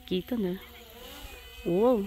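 A person's voice in two short calls whose pitch rises and falls, one near the start and one near the end, over a faint steady buzz.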